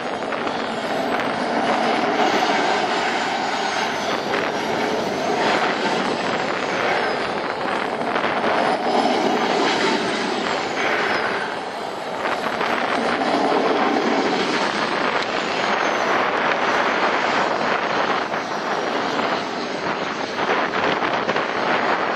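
Model jet turbine engine of an RC F-16 running on the ground: a steady, loud rushing noise with a faint high whine that drifts up and down in pitch.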